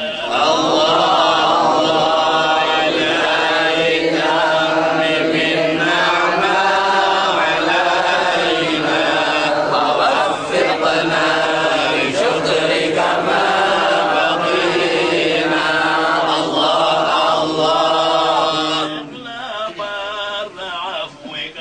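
Male voices chanting a melodic Maulid recitation in Arabic, with long held and bending notes. It starts just after the opening and drops off about a second before the end.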